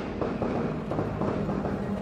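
Music video soundtrack: a dense rumbling, crackling noise, with a low steady tone coming in strongly near the end.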